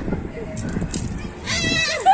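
A young girl's high-pitched, quavering cry in the last half second.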